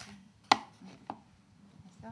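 A sharp tap on a hard surface about half a second in, then a fainter tap about half a second later, from handling tools and paper on a craft table.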